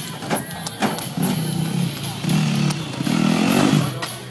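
Trials motorcycle engine revving in three short bursts as the rider works over an obstacle, the last burst rising and the loudest. Two sharp knocks come within the first second.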